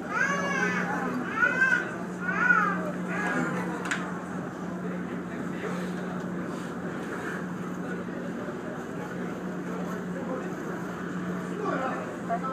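Ferry's engine running with a steady low hum under an even wash of noise. A child's high voice calls out several times in the first few seconds.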